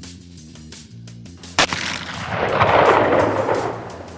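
Intro music with a steady beat, broken about one and a half seconds in by a single sharp gunshot. A loud rushing noise follows, swelling for about a second and then fading.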